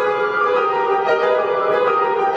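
Grand piano being played in a classical style, with several notes sounding together and the notes changing a few times a second.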